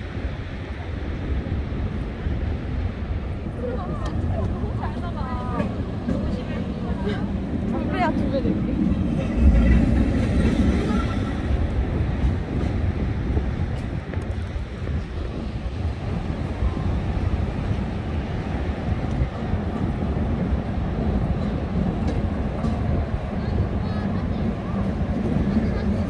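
Steady low rumble of wind and surf by the sea, with a stronger gust a little after nine seconds. People talk between about four and nine seconds in.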